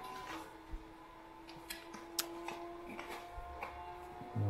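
Cardboard and paper packaging being handled, giving a few scattered light clicks and rustles.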